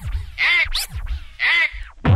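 Electronic dance music in a break of scratch-like swooping sounds, two of them about a second apart with a quick rising sweep between, over low thumps.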